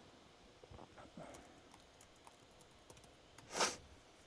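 Faint, irregular clicks of typing on a computer keyboard, with a short, louder breathy hiss about three and a half seconds in.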